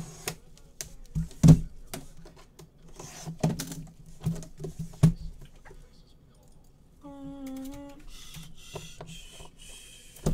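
Sharp clicks and knocks of a box cutter and gloved hands working at the seam of a metal briefcase-style card box, the loudest knock about one and a half seconds in. A scraping hiss follows near the end.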